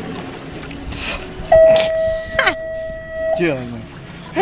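A steady, unwavering tone held for nearly two seconds, starting about a second and a half in, over people's voices.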